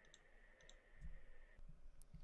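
Near silence: room tone with a faint steady high hum that stops partway through, and two faint clicks.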